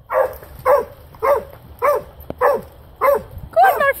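A dog barking steadily, seven barks at a little under two a second, with higher, wavering yelps near the end. It is the demanding bark of a dog that barks whenever its walker stands still for too long.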